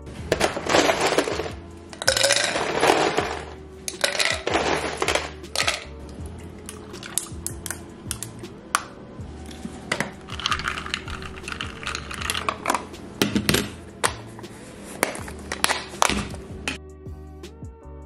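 Ice cubes clinking against a drinking glass, with iced coffee and creamer pouring into it, many sharp clinks and a few rushing pours, over soft background music.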